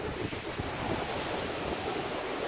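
Ocean surf washing onto the beach, a steady rush, with wind buffeting the microphone.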